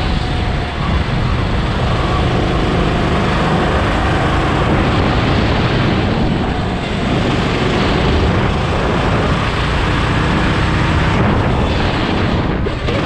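Sodi RT8 rental go-kart's single-cylinder four-stroke engine running at speed, recorded from on board as a loud, steady drone with heavy low-end noise.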